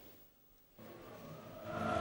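Near silence for under a second, then faint outdoor stadium ambience fades in and grows steadily louder.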